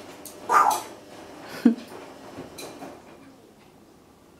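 Congo African grey parrot making two short calls: a hoarse, noisy one about half a second in and a brief note gliding downward a little over a second later, followed by a few faint soft sounds that die away.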